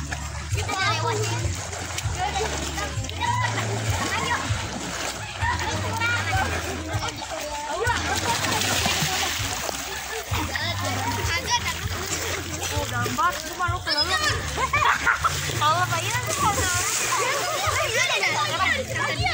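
Children splashing and swimming in a swimming pool, with children's voices calling and chattering throughout. The splashing is heaviest about eight to ten seconds in.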